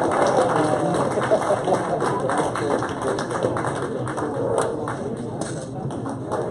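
Background chatter of several overlapping voices, with scattered light taps.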